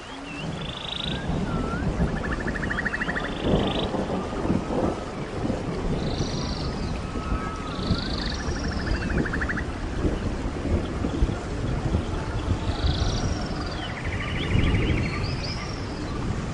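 Rainforest ambience: birds calling, with a short high buzzy call followed by a rapid pulsed trill, the pair repeated three times. Under the calls runs a low, uneven rumble, like thunder, with rain.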